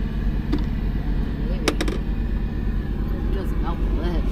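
Steady low engine drone heard inside the truck cab, with two sharp clicks a little over a second and a half in.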